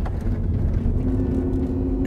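Road and engine rumble inside the cabin of a moving SUV, steady and low, with a steady hum tone joining about a second in.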